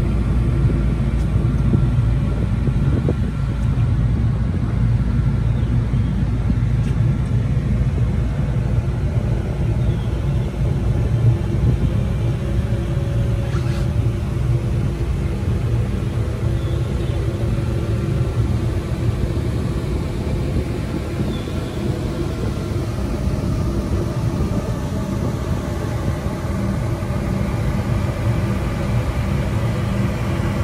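A ferry's engine running: a steady low rumble with a constant hum.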